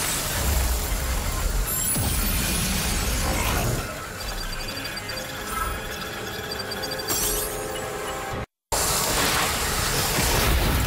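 TV action-scene soundtrack: dramatic score mixed with dense effects noise for the first few seconds, then a quieter held score with runs of rapid high electronic beeps from a computer scanning display. The sound cuts out for a moment near the end, then comes back loud.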